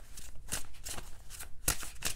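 A deck of tarot cards being shuffled by hand: a run of irregular, crisp card snaps and slides, several a second, with one louder snap near the end.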